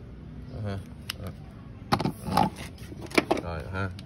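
A man speaking briefly, with a few sharp clicks and knocks from a brass-and-plastic quick-connect spray nozzle being handled and taken apart.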